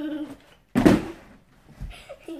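A child's body thudding onto a folding foam gymnastics mat during a cartwheel: one loud thud about a second in and a softer low thump near the end.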